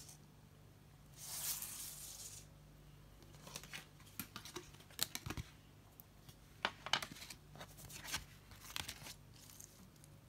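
Playing cards being slid and handled on a wooden floor: a short papery rustle about a second in, then a scatter of light clicks and taps as plastic dice are picked up and cards laid down.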